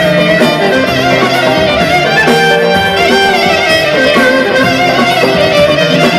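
Live Greek folk (dimotiko) band playing an instrumental passage without vocals, a lead melody instrument winding through ornamented phrases over a steady bass accompaniment.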